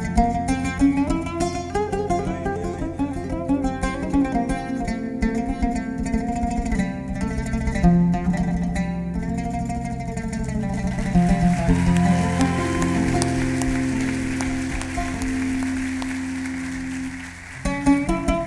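Oud improvisation, many quick plucked notes over a steady low held tone. From about eleven seconds in, the playing turns to long sustained notes that slowly fade, and there is a short dip just before plucked notes return near the end.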